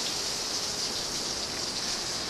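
Steady, even hiss with no separate sounds in it.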